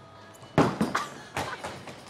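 Bowling ball landing on the wooden lane with one loud thud about half a second in, followed by several quicker, quieter knocks.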